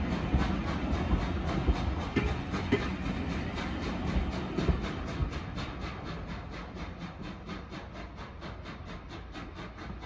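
A heritage passenger train of coaches rolling past and away along the track, with a quick even rhythm of about four beats a second. It grows steadily fainter in the second half as the last coach passes and the train recedes.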